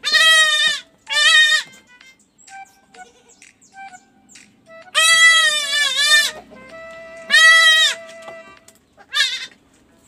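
Young goat kids bleating loudly, five wavering bleats, the longest about five seconds in, while a kid is held for an iron vitamin injection.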